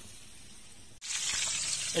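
Fish frying in a pan of hot oil over a wood fire, a loud steady sizzle that starts suddenly about halfway through after a quieter first second of faint hiss.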